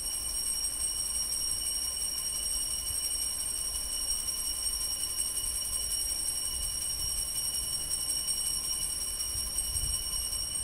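Altar bells ringing continuously with a steady, high-pitched ringing, marking the elevation of the consecrated host.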